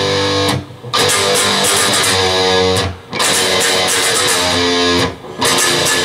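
Electric guitar playing a strummed chord riff, the chords ringing in phrases about two seconds long with a short break between each.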